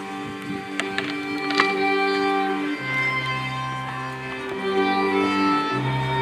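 Live folk string band of fiddles over a low bowed bass playing a Moravian folk dance tune, with a few sharp knocks about a second in.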